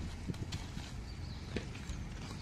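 A few faint, soft knocks over a steady low rumble.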